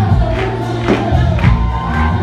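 Live gospel-style worship song: several voices singing together over bass guitar and a steady drum beat, about two beats a second.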